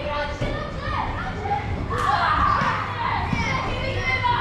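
Many children shouting and calling out together in a large hall, with occasional dull thuds of bodies landing on trampolines.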